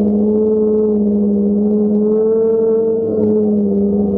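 DJI Phantom quadcopter's motors and propellers humming steadily, heard from the GoPro mounted on the drone. The pitch rises a little about two seconds in and eases back down near the end.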